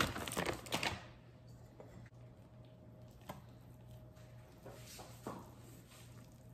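A stainless steel mixing bowl and wooden spoon clinking and scraping for about the first second. Then mostly quiet, with a faint steady hum and a couple of soft knocks as the bowl is handled.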